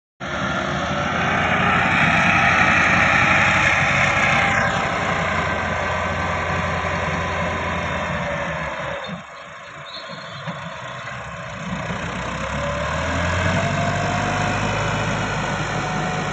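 Massey Ferguson 385 tractor's four-cylinder diesel engine working under load, hauling a sand-loaded trolley through loose sand. It runs loudest at first, drops off just after nine seconds, then picks up again with a rising whine.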